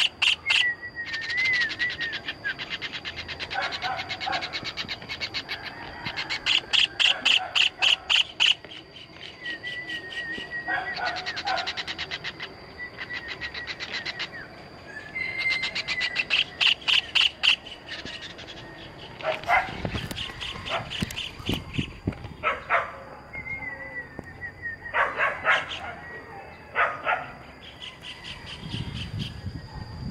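White-throated kingfisher giving loud, rapid chattering calls in bursts of one to two seconds, repeated every few seconds. Thin wavering whistles from other birds come between the bursts, over a steady high-pitched whine.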